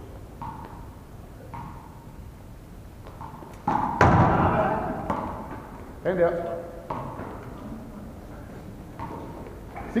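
One-wall handball rally in a gym hall: a loud slap of a hand on the ball about four seconds in, ringing in the hall, followed by a short shout from a player around six seconds, with fainter thuds of play between.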